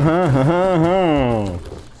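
A man's voice holding one long drawn-out vocal note without words, its pitch rising and falling, for about a second and a half before fading.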